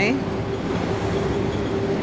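A steady mechanical hum over a continuous rumbling outdoor background.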